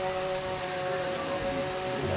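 Public-address feedback: a few steady ringing tones held together through the loudspeakers, running unbroken and unchanging in pitch.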